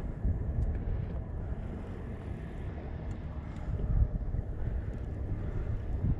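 Wind buffeting the microphone: an uneven, low rumble that rises and falls.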